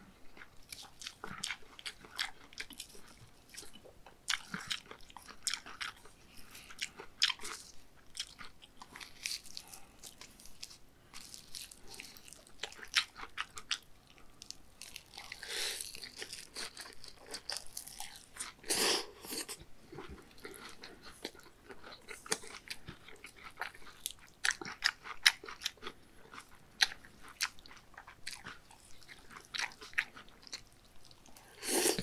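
Close-miked chewing of raw beef bibim noodles with crisp pear slices and laver: wet, clicky mouth sounds and crunching bites, with a couple of longer noisy sounds around the middle.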